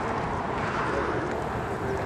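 Outdoor noise: wind rumbling on the microphone, with faint voices in the background.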